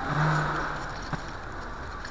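Street traffic noise that swells briefly near the start, as a vehicle passes, with a short low steady tone under it, then one sharp click a little past one second.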